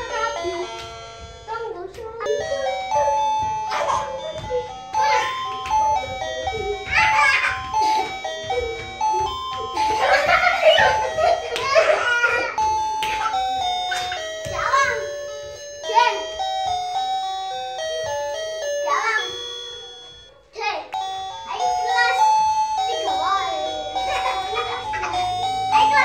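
Dance music with a simple chiming electronic melody, with children's voices calling out over it. The music breaks off for a moment a little over three-quarters of the way through, then carries on.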